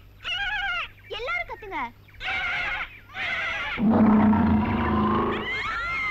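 Several short, high, wavering vocal calls, then about four seconds in a loud, low animal roar lasting over a second, followed by a rising scream near the end.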